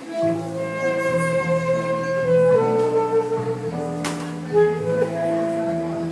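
Saxophone playing a slow, legato melody of held notes over keyboard accompaniment with a moving bass line.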